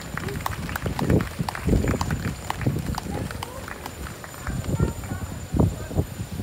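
Irregular knocks, clicks and thuds over the murmur of indistinct voices.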